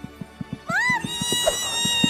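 A cartoon girl's voice swooping up into a long, high held squeal of delight, starting about a third of the way in, over background music with a quick, even beat of short low taps.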